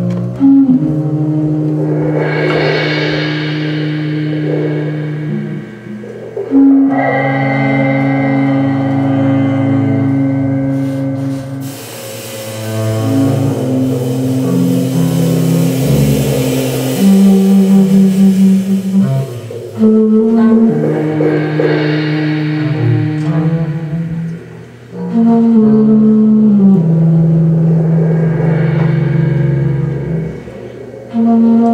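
Avant-garde jazz quintet playing live: long held low notes that step to new pitches every few seconds, with swells of bright, hissing sound rising and falling over them, the largest in the middle.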